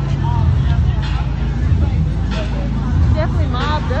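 Several people's voices talking and calling out over a steady low rumble, the voices livelier near the end.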